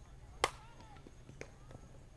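A softball bat hitting a slow-pitch softball: one sharp crack about half a second in, followed by a couple of fainter knocks.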